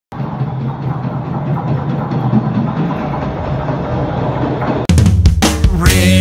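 MBTA Red Line subway train arriving at the platform, a steady running noise from the station. Almost five seconds in it cuts off abruptly and a rock band's drum kit starts loud.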